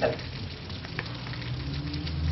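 Steady hiss of room tone with a low hum, and one faint click about halfway through.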